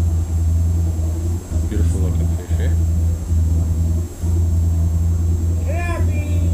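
A loud, steady low rumble, broken by a few brief dips, with faint voices in the background.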